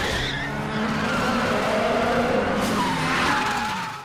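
A car's tyres squealing as it drifts sideways, with its engine running underneath; the sound dies away just before the end.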